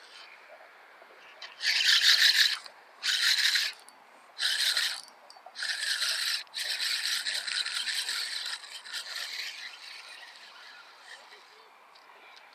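Spinning reel being cranked in several short spurts, a high rasping whir from the reel turning and the line winding onto the spool.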